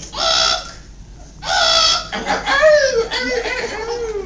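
A woman imitating a bird: two loud, shrill squawks about a second and a half apart, followed by voices and laughter.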